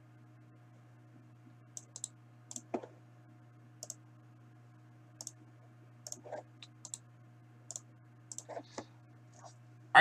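Irregular, quiet computer mouse and keyboard clicks, a dozen or more spread over several seconds, as a list is selected, copied and pasted into a spreadsheet. A faint steady low hum lies under them.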